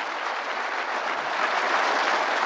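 Audience of conference delegates applauding steadily.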